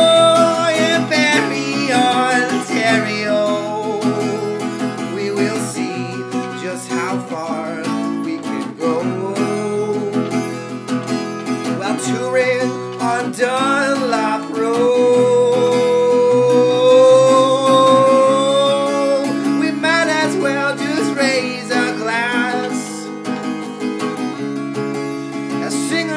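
Acoustic guitar with a capo, strummed in the key of E, under a man's singing voice. The voice holds one long note a little past the middle.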